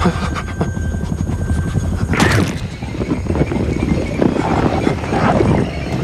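Film soundtrack: a steady low helicopter cabin drone under a tense music score, with a sudden loud noise burst about two seconds in.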